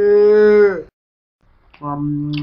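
A long moo at a steady pitch that falls away and stops just before a second in; a second, lower moo starts near the end.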